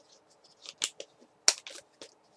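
Plastic water bottle crackling and clicking as it is handled just after a drink: several short, sharp crackles, the loudest about one and a half seconds in.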